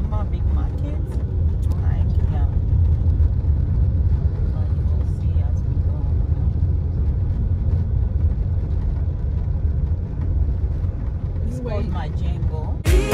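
Car driving along, heard from inside the cabin: a steady low rumble of engine and road noise, with faint voices near the start and again just before the end.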